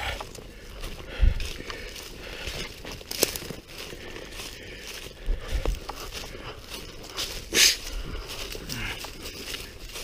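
Footsteps on a trail of dry leaf litter, with twigs and brush crackling and rustling against the walker, irregular crackles broken by a few louder thumps.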